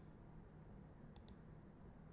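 Two faint computer mouse clicks close together about a second in, over near-silent room tone.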